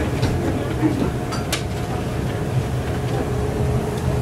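Steady hiss with a low hum, with a single click about a second and a half in.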